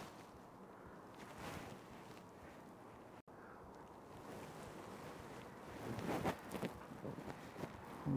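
Faint wind noise on the camera microphone, broken by a momentary dropout a little after three seconds, with a short patch of louder soft knocks and rustling about six seconds in.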